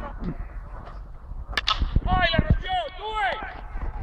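A baseball bat hitting a pitched ball: one sharp crack about a second and a half in, followed right away by players shouting.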